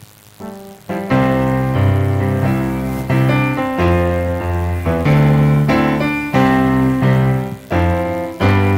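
Keyboard playing the opening of a hymn: sustained chords with a low bass line, coming in softly about half a second in and then full from about a second, the chords changing roughly once a second.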